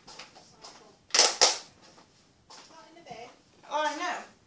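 Two short, sharp knocks or rattles close together about a second in, from objects being handled, followed near the end by brief snatches of a person's voice.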